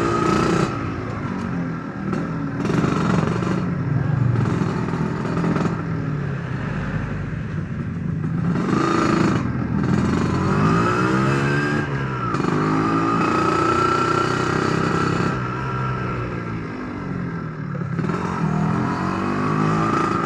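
Yamaha RXZ two-stroke single-cylinder motorcycle engine being ridden, its revs rising and falling several times as the throttle is opened and closed.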